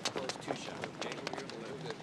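Footsteps of several people hurrying over wet pavement, hard soles and heels making a quick, irregular clatter, under faint crowd chatter.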